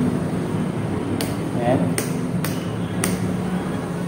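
Wall rocker light switches being flipped, four sharp clicks starting about a second in, spaced about half a second to a second apart.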